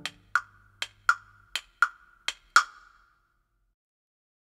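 Wood block struck eight times in uneven tick-tock pairs, imitating a clock ticking. A low accompaniment note dies away under the first few strikes, and the ticking stops about two and a half seconds in.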